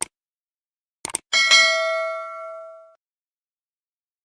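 Subscribe-button animation sound effects: a mouse click, then a quick double click about a second in, followed by a bright bell ding that rings out and fades over about a second and a half.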